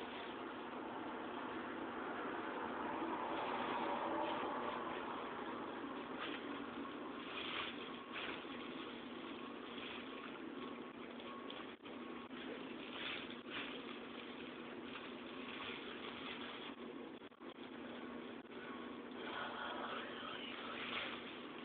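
Steady hiss of room noise, with soft intermittent rustling of plastic gloves working bleach into hair.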